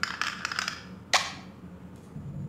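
A quick cluster of light clicks and knocks, then one sharp knock about a second in with a short ringing tail.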